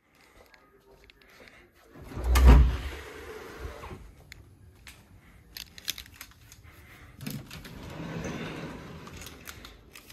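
Interior doors being handled: a heavy thump about two and a half seconds in, then scattered clicks and knocks, with a rustling stretch a couple of seconds before the end.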